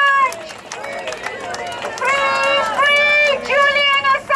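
Rally crowd chanting, led by one loud, high-pitched voice close to the microphone, in long held syllables; the chant is quieter for the first couple of seconds and picks up about halfway through.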